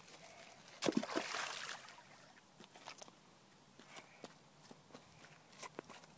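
Footsteps crunching and bricks and stones knocking on a rocky riverbank, with one sharper knock about a second in.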